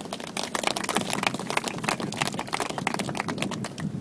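A small crowd applauding: a dense, irregular patter of hand claps that tapers off near the end.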